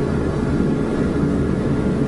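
Steady low rumbling background noise with a faint hum, even in level throughout, in a pause between spoken words.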